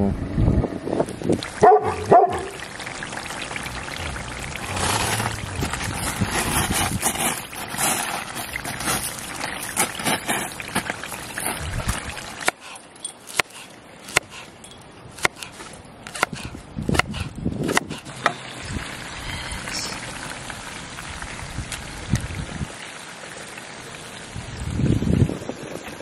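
A dog barks once or twice near the start. Then a sauce of beef strips, peppers and onions sizzles and bubbles in a frying pan, with sharp clicks and taps of a spatula against the pan.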